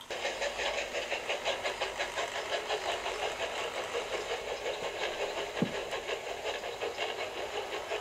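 A model tank engine running along the track, a fast even pulsing rhythm that starts abruptly as it pulls away, with one brief knock about halfway through.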